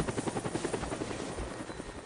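A rapid, even pulsing, about twelve pulses a second, fading away as the track ends.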